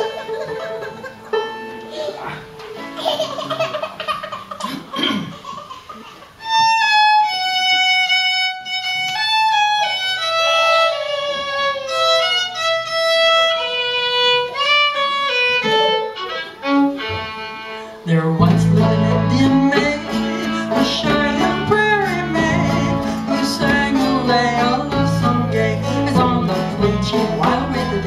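A fiddle plays a solo melody, then about 18 seconds in a folk string band joins in with banjo, guitar and bass guitar, filling out the sound with a steady beat.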